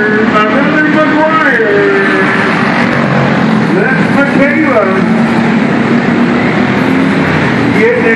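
Racing kart engines running on a dirt oval, their pitch climbing and dropping as the karts accelerate and lift off for the turns; one kart passes close about four seconds in.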